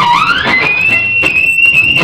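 Electric guitar lead note sliding up in pitch over about half a second, then held as one long, high, steady sustained note.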